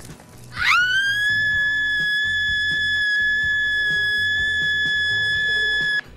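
A young woman's long, high-pitched scream that sweeps sharply up about half a second in and is then held at one steady pitch without a break.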